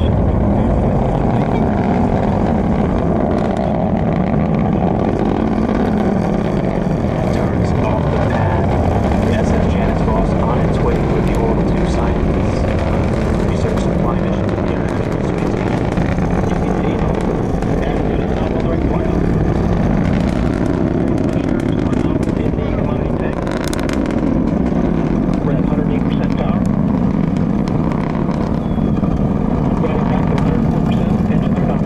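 Distant rocket launch rumble from the Antares rocket's two first-stage engines: a continuous low, crackling roar that slowly swells and fades.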